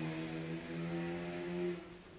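A passing motor vehicle's engine, a steady drone holding one pitch, fading away near the end.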